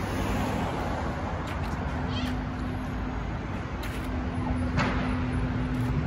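Street traffic noise: a steady low rumble and hum, with a few short high squeaks or cries, one about two seconds in and one near five seconds.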